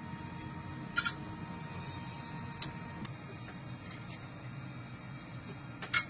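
Steady low machinery hum inside an aircraft carrier's catapult control booth, with a faint thin tone that stops about halfway. A few sharp clicks cut through it, the loudest about a second in and another just before the end.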